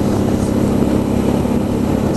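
2012 Suzuki V-Strom DL650's V-twin engine running at a steady cruise through an Akrapovic exhaust, with wind and road noise from riding.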